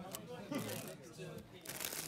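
Clear plastic bags holding loose action figures crinkling and rustling as a hand sorts through them, with voices chatting in the background. The crinkling gets denser near the end.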